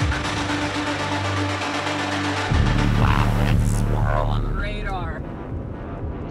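Background electronic music with steady held notes and a deep bass line; the bass changes and the music gets louder about two and a half seconds in. A voice comes in over the music near the end.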